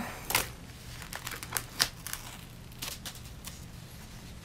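Glued-on rhinestones and their backing being peeled off skin by hand: crinkling, tearing crackles with scattered sharp clicks. A sharp burst at the very start and another click near two seconds in are the loudest.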